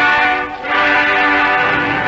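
Orchestral music bridge led by brass, playing sustained chords that dip briefly about half a second in before a new chord sounds, marking the change between scenes of the radio drama.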